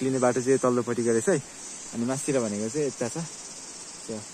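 A steady, high-pitched drone of insects in the surrounding vegetation runs throughout. A man's voice comes in two short, louder phrases over it, in the first second and again near the middle.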